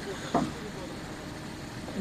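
Steady low background hum with a brief murmur of a man's voice about a third of a second in.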